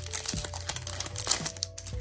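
Foil booster-pack wrapper crinkling as it is pulled apart and the cards are slid out, over quiet background music with a few held notes.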